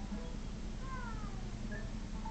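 Television audio from a children's programme: a high, falling meow-like call about a second in, over a low steady hum.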